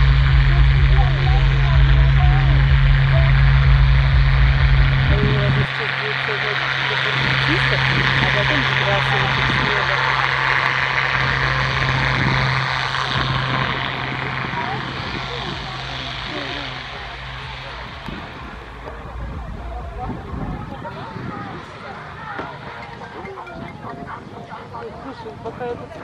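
Piston propeller aircraft engine running with a steady drone. The deepest part of the drone drops off abruptly about six seconds in, and the sound fades away over the second half. Voices can be heard faintly underneath.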